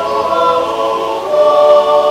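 Several voices yodelling together in harmony, holding long notes and moving to a new chord a little over a second in.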